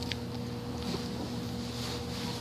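Fingers rubbing and brushing right against the microphone while handling a plastic action figure, with a faint click just after the start, over a steady low electrical hum.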